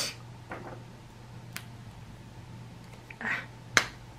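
Alcohol markers being handled while a colour is chosen: a few scattered clicks and light taps, with one sharp click, the loudest, near the end.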